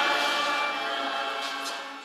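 Choral music with held, sustained chords, steadily fading out.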